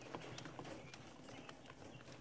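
Faint, irregular light taps and scratches of day-old Pharaoh quail chicks pecking and stepping on paper towels in a brooder, over a low steady hum.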